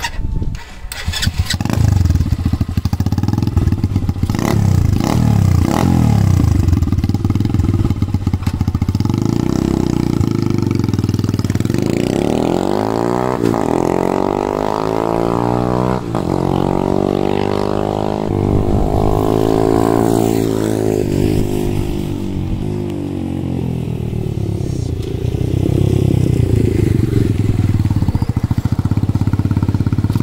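A 2020 Boom Vader's small air-cooled single-cylinder four-stroke engine runs and revs on a test ride. It rises and falls in pitch as the bike rides away down the drive and comes back. The Mikuni VM22 carburettor has just been rejetted with a 100 main jet.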